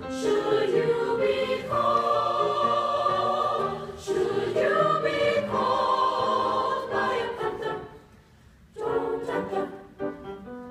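Mixed choir singing sustained chords. The sound drops away for about a second near the end, then the music resumes.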